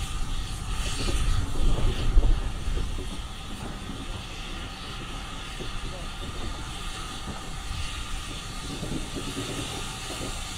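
Heritage train running along the line, heard from its passenger carriage: a rumble of wheels and carriage, loudest in the first two or three seconds, then settling to a quieter, steady run.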